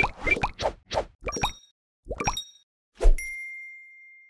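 Animated end-screen sound effects: a string of quick cartoon pops rising in pitch, some with small chime-like tinkles, then a low thump about three seconds in and a bright bell-like ding that rings on and fades.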